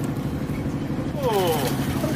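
Fishing boat's engine running steadily with a low rumble, while a voice calls out briefly with a falling pitch a little past the middle.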